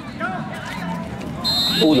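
Referee's whistle: one steady blast of about a second, starting about a second and a half in, signalling that the goal kick may be taken.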